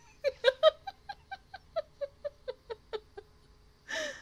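A woman laughing: a run of about a dozen short pitched "ha" pulses at about four a second, loudest in the first second and then lighter, ending in a breathy intake of breath.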